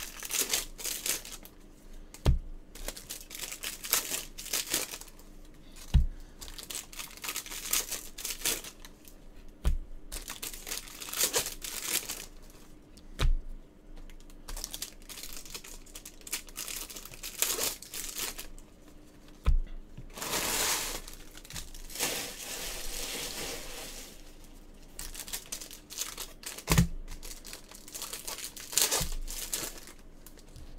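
Foil trading-card pack wrappers crinkling and tearing as packs are ripped open by gloved hands, with a dull thump every few seconds.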